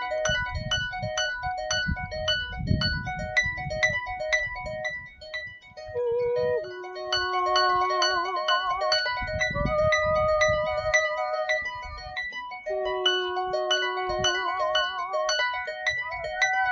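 Concert harp plucked in a flowing run of notes, joined about six and a half seconds in by a woman's voice singing long held notes with vibrato. A low rumble sits under the music in the first five seconds and again around ten seconds in.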